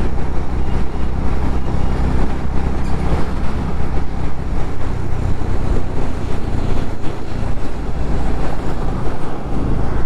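Honda H'ness CB350's air-cooled single-cylinder engine running at a steady highway cruise, heard from the moving motorcycle with wind and road noise over it.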